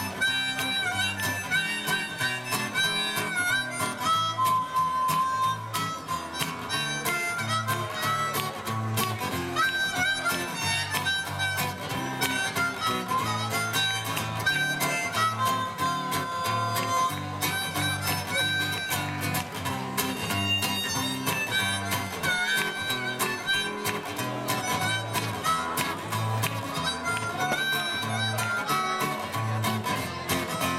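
Live acoustic duo playing an instrumental passage: a strummed acoustic guitar keeping a steady rhythm under a harmonica melody played into a handheld microphone, through a small PA.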